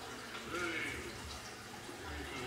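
A toddler's faint babbling over quiet room tone, in a high-pitched, wordless voice.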